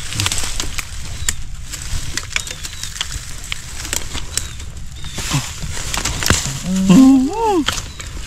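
Crackling and snapping of dry bamboo leaves and twigs, with machete strokes, as a wild bamboo shoot is cut out at its base. A man's brief vocal sound comes near the end.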